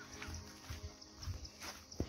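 Footsteps on a path with low, irregular handling thumps from a hand-held phone as someone walks, about two a second.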